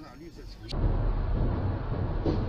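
A brief voice, then an abrupt cut to the steady low rumble of a car driving, with road and engine noise picked up inside the cabin by a dashcam.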